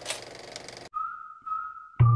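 A hiss of noise for just under a second, then about a second in a single steady whistled note begins and holds: the opening of a retro title-card intro sting.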